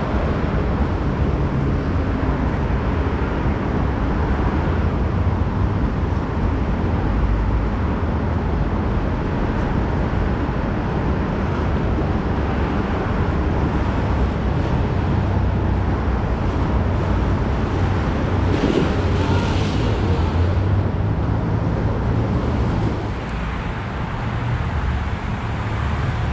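Steady low rumble of road traffic noise, dipping slightly near the end.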